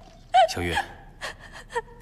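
A woman crying: a loud, sobbing gasp about half a second in, followed by a few shorter, softer sobbing breaths.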